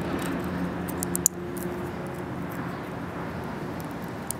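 Small metal clicks of the SOG Crosscut multi-tool's blades and tools being folded shut, with one sharper snap about a second in, over steady background noise.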